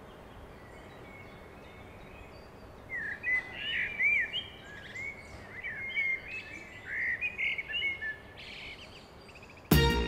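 Faint steady outdoor hiss, then small birds chirping in short rising and falling notes for about five seconds. Music starts abruptly and loudly near the end.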